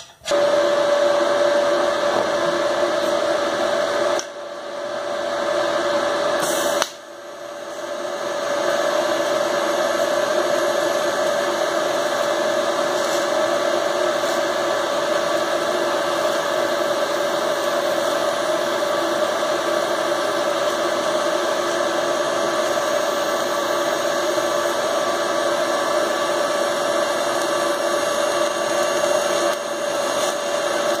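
Electric arc welding on the metal tubing of a swingarm: a steady buzzing hiss with a constant hum under it. It starts abruptly and dips briefly twice in the first seven seconds before running on evenly.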